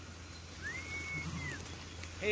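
A single high whistled note lasting about a second, gliding up, holding steady, then dropping away.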